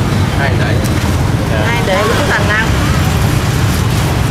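Street noise: a steady low rumble, typical of passing traffic, with people talking in the background about two seconds in.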